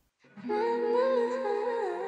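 Playback of a pop song's vocal intro: a female voice sings long, slowly gliding ad-lib notes over a soft backing. It starts after a brief silence about a third of a second in.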